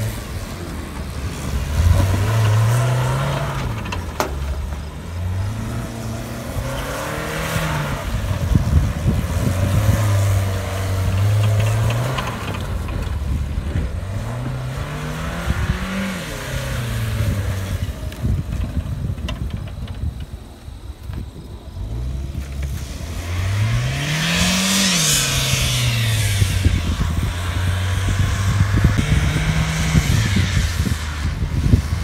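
Saturn sedan's engine revving hard and easing off several times as the car is thrashed around a grassy field. Near the end it spins its tyres in a smoky burnout.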